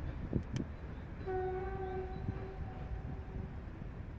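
Train horn sounding one steady blast of about two seconds, starting a little over a second in, over a low rumble.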